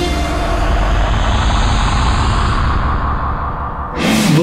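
Loud, deep rumble like heavy engines, a war-sound effect of tanks or aircraft, with a noisy hiss above it. The hiss fades away through the clip, and the whole sound cuts off suddenly at the end.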